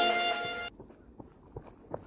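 Background music fades and cuts off about a third of the way in. Then come a few faint footfalls of a runner approaching on a dry dirt path.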